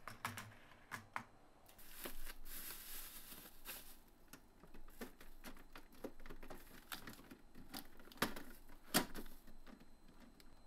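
Light clicks and taps of eggs and a clear plastic egg tray being handled, the tray then slid onto a refrigerator shelf rail. A rustle about two seconds in, and a sharp plastic click just before the end.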